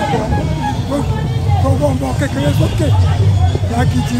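A man talking steadily into a microphone, over background crowd chatter and music.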